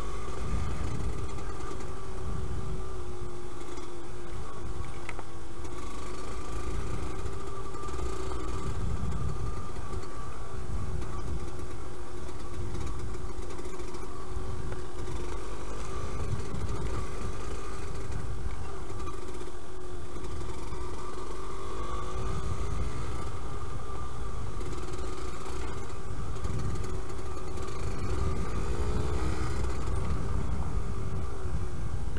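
Yamaha DT125LC YPVS single-cylinder two-stroke engine running at a fairly steady engine speed under way, its pitch wavering slightly with the throttle, over a low rumble.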